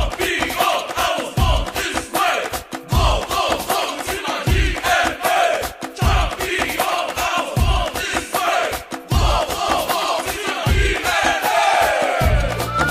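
Music-video soundtrack: a steady heavy beat under a group of voices chanting and shouting together.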